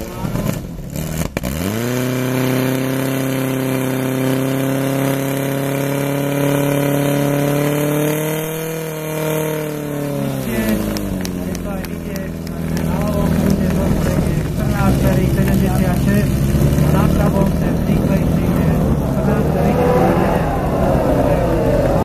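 Portable fire pump's engine revving up steeply about a second and a half in, running at high revs under load, then dropping back to a low idle about ten seconds in and idling on. Voices over the idle.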